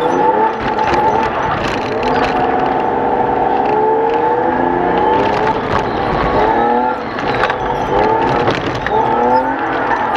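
Race car engine heard from inside the cabin, revving as the car accelerates from a standstill on a snowy track. Its pitch rises several times, with short drops between as it shifts up.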